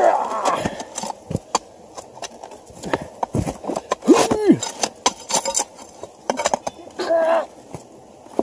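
A long-handled digging tool striking and scraping into rocks and gravel, as loose material is cleared off the bedrock. It makes a series of irregular knocks and clacks.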